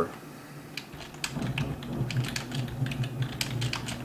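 Typing on a computer keyboard: a quick, irregular run of key clicks that starts about a second in, as a web search query is typed.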